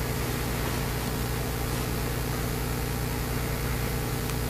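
Steady low hum under a faint even hiss: the room's background noise, with no change throughout.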